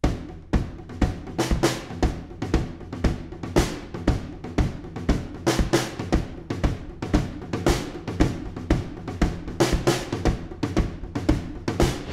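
Drum kit playing a four-on-the-floor groove at 137 beats a minute: bass drum on every beat under a tom pattern in both hands, with snare backbeats.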